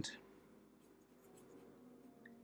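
Faint scratching of a black felt-tip marker on paper in a few short strokes, thickening an inked line.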